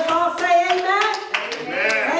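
Steady rhythmic hand clapping, about four claps a second, with voices singing over it.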